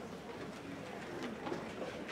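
Auditorium hubbub as a student string orchestra waits to play: a low murmur with a few scattered, short, soft low notes.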